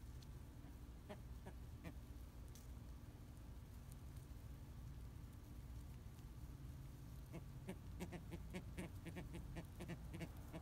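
A flock of American white ibises foraging on a lawn, giving short faint calls: a few about a second in, then a quick run of them over the last few seconds, above a low steady background rumble.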